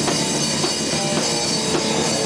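A rock band jamming, with the drum kit and a guitar playing together.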